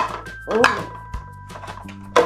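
Background music with steady held notes, a short voice sound about half a second in, and a light knock a little after a second as objects are set into the plastic pans of a toy balance scale.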